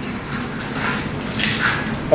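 Footsteps walking on a concrete warehouse floor, about two soft steps a second, over a steady low hum.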